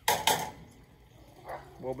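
Metal grilling tongs clacking twice in quick succession, sharp and loud.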